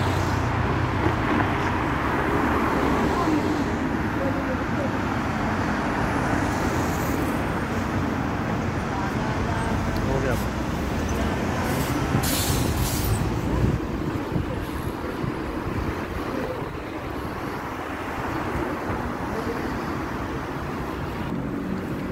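Road traffic on a town street: vehicles passing in a steady rumble, with a short hiss about twelve seconds in.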